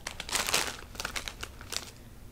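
Plastic chip bag crinkling as a hand rummages inside it: a string of short, irregular rustles.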